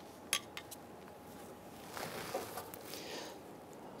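Faint handling noise at the fuel line connector on a fuel tank's top: three small, sharp clicks within the first second, then soft rustling as a gloved hand works in among the lines.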